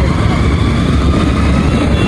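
Steady rumble of a motorcycle riding through traffic, with wind buffeting the microphone.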